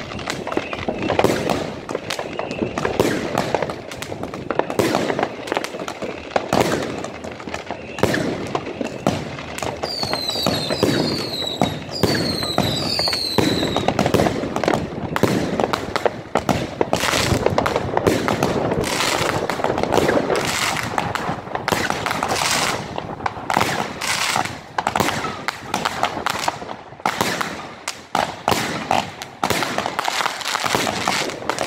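Vuurwerkmania 'Dragon Fire' 25-shot firework cake firing, its shots and bursts coming in quick succession and growing denser in the second half. A few short falling whistles sound about ten to fourteen seconds in.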